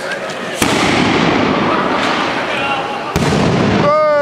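Fireworks burning with a loud, dense rushing hiss that starts suddenly about half a second in and grows louder again just after three seconds.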